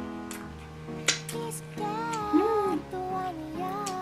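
Background music led by a plucked guitar with a moving melody line, with a few sharp clicks in the first second and a half.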